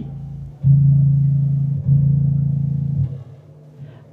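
Low B string of a five-string electric bass plucked twice, a little over a second apart. The notes ring low and steady, then are damped off suddenly about three seconds in.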